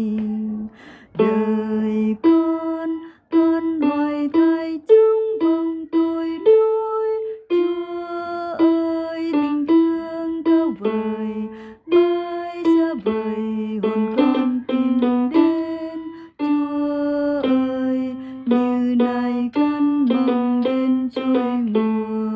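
A single melody line of a Vietnamese hymn's second voice part, sounded one note at a time in clear, held notes with short breaks between phrases.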